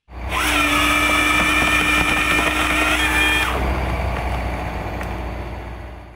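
A power tool's motor runs at high speed. It starts suddenly and holds a steady high whine for about three seconds, then drops in pitch as it winds down and fades out.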